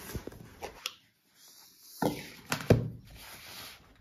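Handling of a cardboard Apple box and its paper insert: light rustling with several sharp taps and knocks, broken by a second-long silent gap.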